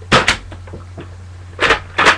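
Nerf Recon CS-6 foam-dart blaster being fired: two sharp clacks of its spring-plunger mechanism in quick succession just after the start, then another sharp clack near the end.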